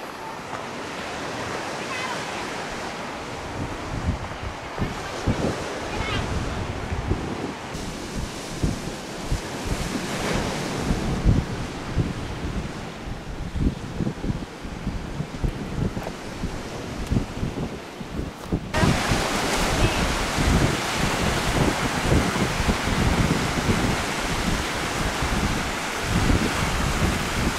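Ocean surf washing onto a sandy beach, with wind gusting on the microphone. About two-thirds of the way through, the surf abruptly gets louder and fuller.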